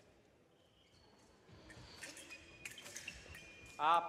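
Faint sounds of a foil fencing exchange: after a quiet first second and a half, sharp clicks of blades and footwork on the piste, with a few short high tones.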